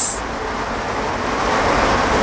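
A steady rushing background noise with no clear pitch, slowly growing louder.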